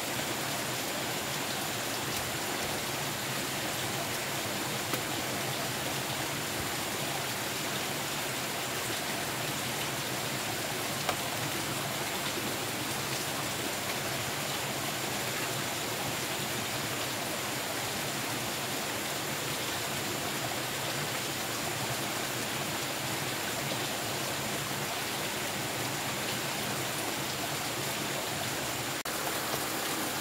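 Steady, even rushing noise throughout, with a faint high steady tone above it and a single light knock about eleven seconds in.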